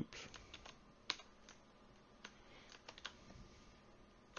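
Faint, irregular clicking of computer keyboard keys, about a dozen keystrokes spread over a few seconds.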